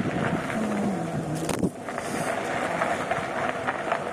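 Steady rolling rattle of a bicycle being ridden, with wind on the microphone; a brief low hum of a voice about half a second in, and a short lull just before two seconds.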